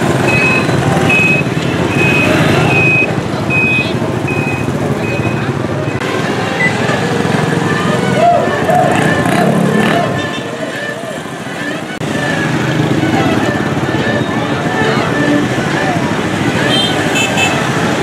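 Busy street at night: crowd voices and passing motorbike traffic. A short high electronic beep repeats in the first five seconds or so.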